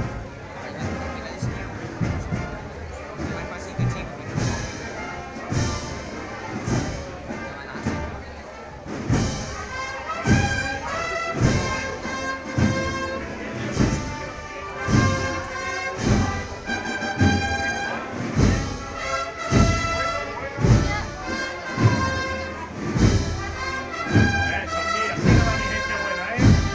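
A Spanish procession band of brass, woodwinds and drums plays a slow processional march. A bass drum beats steadily about once a second, and the brass melody comes through clearly from about nine seconds in.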